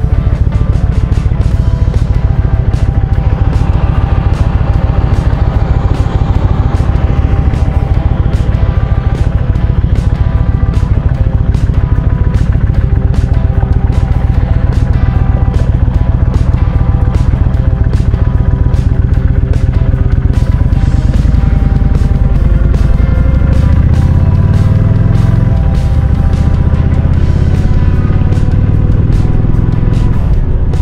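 Background music over a Kawasaki Vulcan motorcycle engine running at idle. About two-thirds of the way through, the engine pulls away, rising in pitch through the gears.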